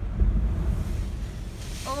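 A big ocean wave crashing against the boulders of a rock jetty, heard from inside a parked vehicle: a deep boom just after the start, then the hiss of spray swelling near the end as it reaches the vehicle.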